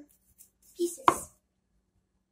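A single sharp chop of a large kitchen knife through a lime onto a wooden cutting board, a little after a second in.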